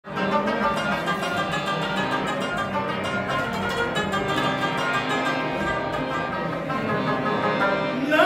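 Instrumental opening of a Pashto folk piece: a rabab plucked in quick runs over the sustained tones of a harmonium, played steadily without singing.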